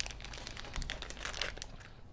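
Plastic packaging bag crinkling in the hands as a small part is unwrapped: a quick, irregular run of crackles that thins out near the end.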